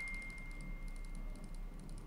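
The fading tail of a single high chime tone, with faint high ticking over quiet room tone.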